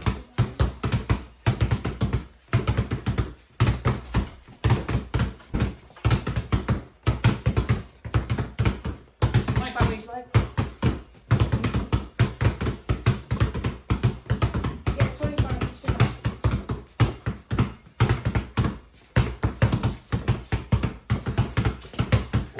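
Two basketballs dribbled hard and fast on a bare concrete floor, a rapid, overlapping run of bounces that echo in a small room.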